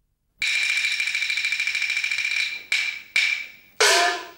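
Peking opera percussion of gongs and cymbals. A fast, rattling roll starts sharply about half a second in and runs about two seconds, then come three separate strikes; the last is a gong stroke whose pitch rises.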